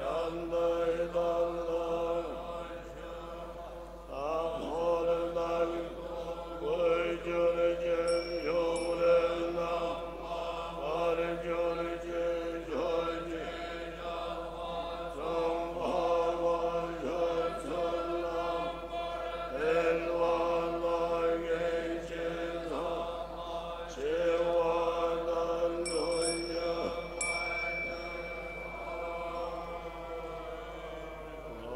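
Buddhist monks chanting together in low, held unison tones, each phrase opening with a rising slide in pitch. A high bell-like ring sounds briefly twice, about eight seconds in and again near the end.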